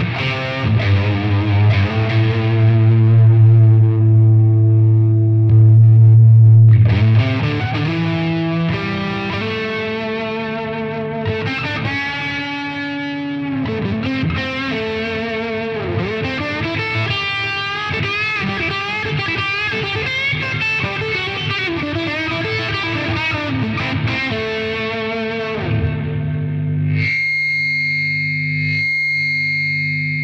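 Single-coil electric guitar played through a Flattley Plexstar plexi-style drive pedal, distorted like a pushed Marshall Plexi amp. A held chord rings for several seconds, then riffs follow with bent and vibrato notes. Near the end the playing stops and a steady hum and buzz with a thin high whine remain: the noise of the single-coil pickups.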